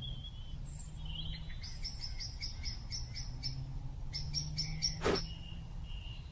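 Birds chirping in a run of quick, evenly spaced high notes, about four or five a second, then a second shorter run, over a low steady hum. A single sharp click just after the second run is the loudest sound.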